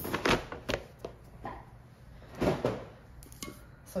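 Glass candle jars with metal lids knocking and clinking as they are handled and set down on a table: a few scattered knocks, the loudest about two and a half seconds in.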